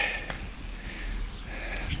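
Garden hose spraying water over vegetable beds, the flow spread into a wide spray by a thumb pressed over the hose end.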